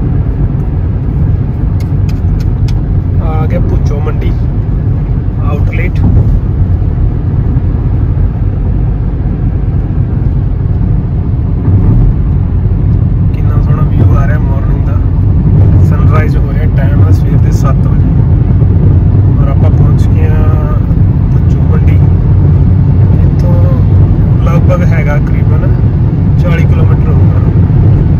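Steady low road and engine rumble heard inside a moving car's cabin while driving at highway speed.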